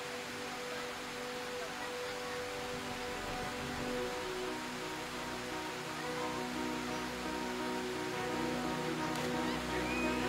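Music with long held notes that change every few seconds, over a steady background hiss.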